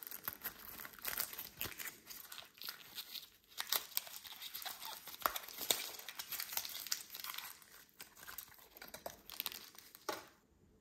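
Cellophane wrapper and paper box of Bontan Ame candy crinkling and tearing as the tear strip is pulled and the box is worked open, a dense run of crackles that stops near the end.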